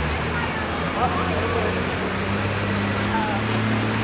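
Steady town traffic noise with a low engine hum, and faint voices of people talking at a distance.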